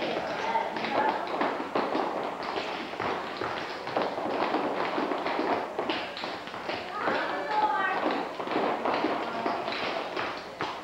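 Many quick, irregular taps and light thumps of children's dance shoes stepping on a wooden parquet floor, over indistinct voices and music.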